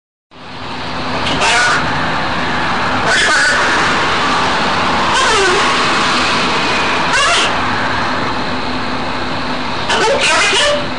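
Blue-and-gold macaw giving short gliding squawks about every two seconds over a loud, steady rushing noise with a low hum.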